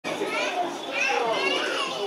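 Children's voices, high-pitched, calling out and chattering.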